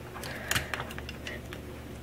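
Light clicks and taps of a diecast scale-model paver being shifted by hand on a model trailer deck, with two sharp clicks about half a second in and a fainter one later, over a low room hum.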